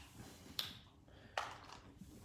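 Faint handling sounds of gear being picked out of a camera bag: two light clicks, about half a second in and again near a second and a half, over quiet room tone.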